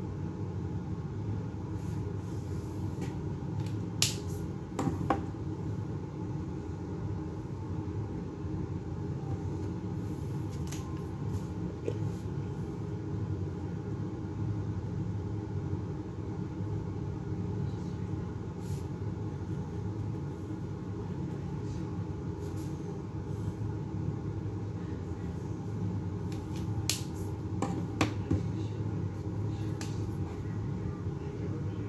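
Steady low hum of room noise with a few sharp clicks: two about four and five seconds in and two more near the end. The clicks are dual brush marker caps being pulled off and snapped back on as colours are changed.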